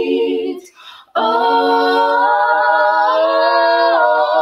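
Three women singing a cappella in close harmony: a held chord breaks off about half a second in, and after a short pause a new chord comes in and is held with vibrato in the upper voices.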